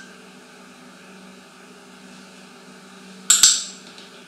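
Steady low room hum, then about three seconds in a short, sharp double click with a brief metallic ring.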